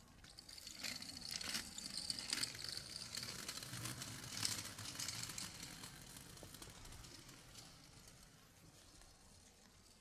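Rustling and scuffing of clothing and an exercise mat as a person gets down onto the mat and settles lying on his side. There are several short scuffs in the first half, and the sound fades away in the second half.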